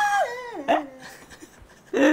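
A person's drawn-out, wordless vocal sound: the voice glides up, holds for about half a second, then falls away, with a short sharp yelp about 0.7 s in before it trails off.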